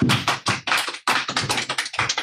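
A small audience clapping: a fast, uneven run of separate hand claps.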